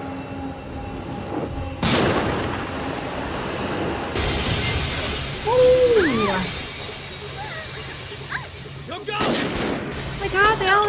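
Action-film fight soundtrack: a sudden crash about two seconds in, then glass shattering, with a shouted cry in the middle and another crash near the end, over background music.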